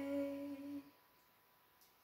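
A girl's voice holding the final sung note of the song, which stops under a second in, followed by near silence.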